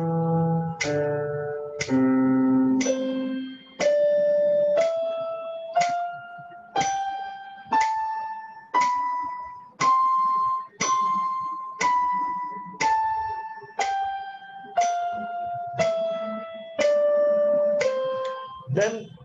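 Electronic keyboard playing a slow scale exercise, about one note per second, each note struck and then fading. It steps up about an octave to a top note around ten seconds in, then steps back down, with a few lower, fuller notes at the start.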